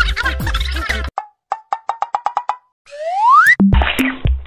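Background music cuts off about a second in. It is followed by edited-in cartoon sound effects: a quick run of about ten short pops, then a rising whistle and a low thump near the end.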